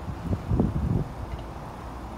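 Low rumbling wind noise on the microphone, swelling about half a second in and easing off after a second.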